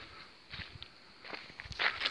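Footsteps on a dirt and gravel surface: several uneven steps, the loudest near the end.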